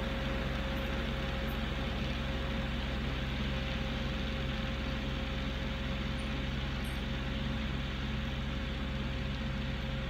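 Kioti CK4010hst tractor's diesel engine running steadily under load at PTO speed, driving a 12-foot Titan 1912 flexwing rotary cutter through thick grass. A steady drone with a constant whine over it.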